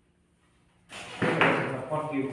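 Near silence for about a second, then a sudden loud burst of noise with a sharp hit, followed by a person's voice.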